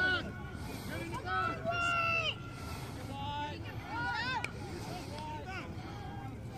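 Several voices shouting and calling out across an open soccer field, overlapping and mostly unintelligible, from players and spectators. The calls are louder about a second and a half to two seconds in and again just past four seconds.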